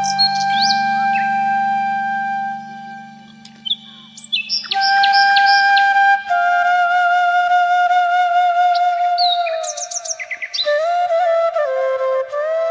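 Background music: a slow flute melody of long held, slightly wavering notes over a low drone that fades out in the first few seconds. Quick bird chirps are mixed in twice, near the middle and again toward the end.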